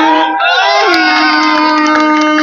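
A man imitating a motorcycle engine with his voice into a handheld microphone: one long, buzzing, held note that dips and climbs back about half a second in. A small crowd of men cheers and whoops over it.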